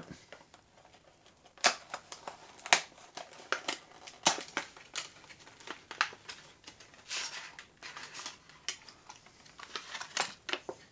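Plastic blister packaging being worked off a cardboard backing card by hand: crinkling and rustling plastic with a series of sharp snaps and clicks, the loudest nearly two seconds in and just under three seconds in.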